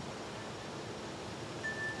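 Steady, even outdoor background hiss with no distinct events; a faint thin high note starts near the end.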